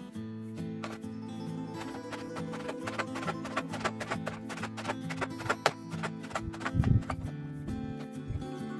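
Background guitar music over a knife chopping pomelo peel on a cutting board: quick, regular knocks for a few seconds from about two seconds in, with a louder low thump near the end.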